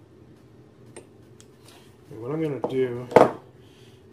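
A short stretch of low voice, then one sharp metallic clack just past the three-second mark as a hand tool is set down on the amp's metal chassis or the workbench, over a steady low background hum.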